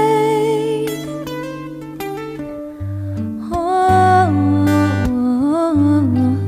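A female singer holds a long vibrato note on "rain" that ends about a second in, over a steady instrumental accompaniment; from about three and a half seconds she sings again in wordless vocal runs.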